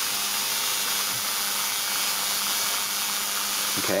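Steady rapid buzzing crackle of spark plugs firing from MSD capacitor-discharge ignition units, each trigger from the spinning magnet rotor's reed switches sending a burst of several sparks, with a faint low hum.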